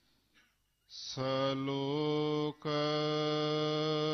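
A man chanting Gurbani verses of the Hukamnama in long, drawn-out, nearly level tones. It starts about a second in after a brief silent pause, with a short break just past the middle.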